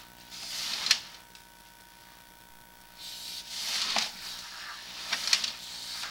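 Sewer camera push cable being fed by hand along the pipe: rubbing, scraping swells every second or two, with a sharp click at the end of some strokes. A steady electrical hum sits underneath.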